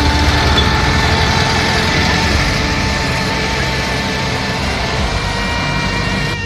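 Engine of an open VW Safari (Volkswagen Type 181), an air-cooled flat-four, running steadily as the car drives away down the road.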